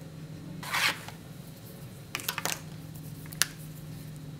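Felt-tip markers handled on paper: a short scratchy rasp about a second in, then a quick run of light clicks and one sharp click near the end, like marker caps coming off and snapping on. A steady low hum runs underneath.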